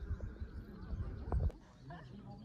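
Wind buffeting the microphone, a gusty low rumble that cuts off abruptly about one and a half seconds in, with faint voices underneath.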